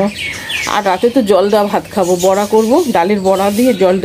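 A woman's voice talking, with short falling bird chirps near the start.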